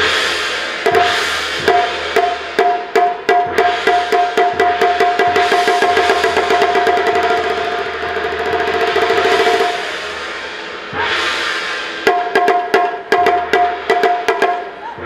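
Chinese drum ensemble: large barrel drums beaten in a fast rhythm of sharp strokes, with a pair of large hand cymbals crashing and ringing over them. The cymbal wash builds through the middle and falls away about ten seconds in, then quick drum strokes return.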